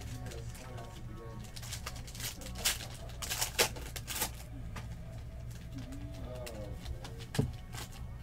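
Foil trading-card pack wrapper torn open and crinkled by hand, with sharp crackles about two to four seconds in, over a steady low hum.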